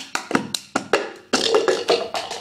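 Cup-song routine: a quick run of hand claps and a plastic cup tapped and knocked on a tabletop.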